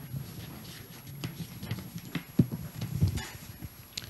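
Papers being handled and turned, with scattered light knocks and taps of objects on a table, a few heavier thumps in the second half.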